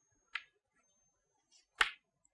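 Two sharp clicks of chalk striking a chalkboard during writing, a light one about a third of a second in and a louder knock near the end.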